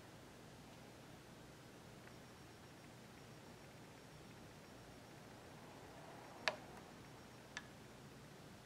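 Near silence in a small room, broken near the end by two sharp clicks about a second apart, the first the louder.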